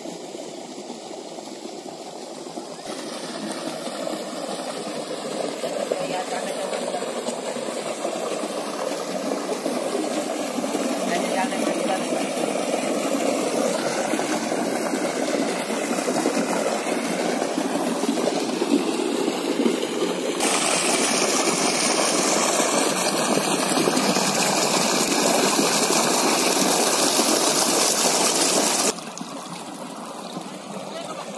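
Water rushing and splashing steadily as it pours into a muddy irrigation pit beside rice paddies. It grows louder after a few seconds and louder again later on, then drops off suddenly near the end.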